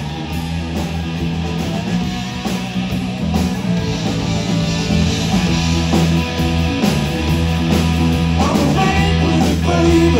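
Live blues-rock band playing: a Fender Stratocaster electric guitar over bass guitar and a drum kit, with a steady driving beat.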